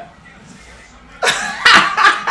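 A man's stifled laughter behind his hand: quiet for about a second, then two sharp, breathy, cough-like bursts.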